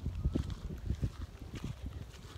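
Footsteps with dull, uneven low thumps, several a second, with faint rustling.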